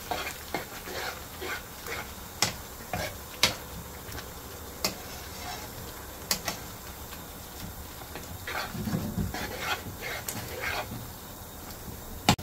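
A spoon stirring thick curry sauce and spinach in a hot metal frying pan: scattered sharp clicks and scrapes of the spoon against the pan over a steady low sizzle.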